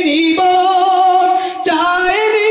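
A man singing a Bengali gazal in a high voice into a microphone, holding one long note with a slight waver, then breaking off briefly and starting a new phrase near the end.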